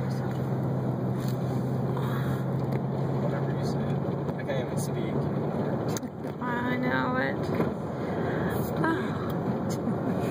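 Car driving along a road, heard from inside the cabin: steady engine and tyre road noise, with a low steady hum that stops a little over halfway through.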